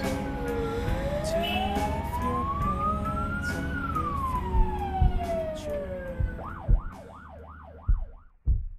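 Police car siren in a slow wail, falling, rising and falling again, then switching to a fast yelp of about four cycles a second near the end, over a low vehicle rumble that fades out.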